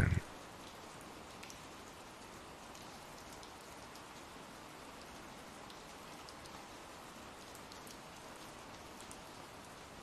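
Faint, steady rain falling, an ambient rain sound-effect bed with no other sound over it.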